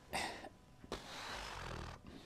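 A man breathing close to a lapel microphone while he thinks: a short intake of breath, a small click about a second in, then a breath out lasting about a second.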